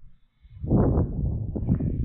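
Rumbling, rustling handling noise with small irregular knocks, starting about half a second in, from a handheld camera being moved around to another wheel.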